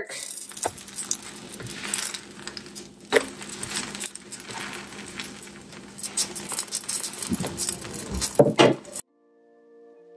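Plastic spatula scraping, tapping and clattering on a nonstick electric griddle as egg wraps are pried loose and flipped. The sound cuts off suddenly about nine seconds in, and soft instrumental music begins near the end.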